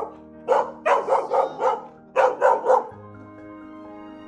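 A young mixed-breed dog barking in two quick runs, about five barks and then three, ending about three seconds in, over background music.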